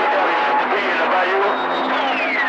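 CB radio receiver output: garbled, overlapping voices of other stations under heavy static. Steady whistles run through it, and from about a second and a half in a whistle glides steadily down in pitch. The signal is rough, with stations talking over each other.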